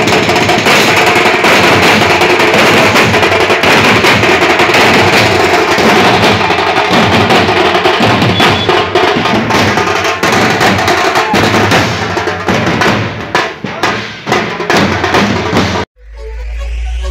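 A group of drummers beating steel-shelled drums with sticks in a fast, dense rhythm, loud throughout. Near the end the strokes thin out into separate beats, then stop abruptly.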